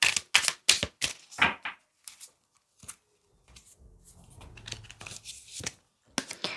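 A deck of tarot cards shuffled by hand: a quick run of sharp card snaps, about four a second, for the first two seconds, then quieter rustling as the cards are handled and one is drawn.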